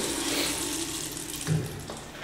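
Urinal flushing: a steady rush of water that slowly fades away, with a brief low sound about one and a half seconds in.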